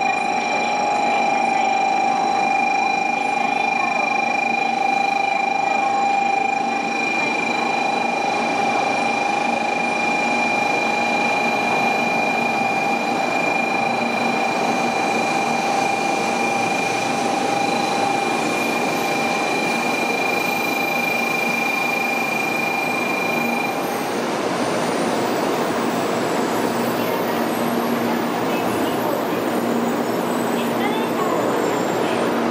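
N700-series Shinkansen train running in along the platform and slowing, a continuous rush of wheel and air noise. Steady high tones sound over it and cut out about 24 seconds in.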